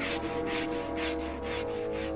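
Rapid, rhythmic scrubbing on wooden deck planks, about five strokes a second, over held background music tones.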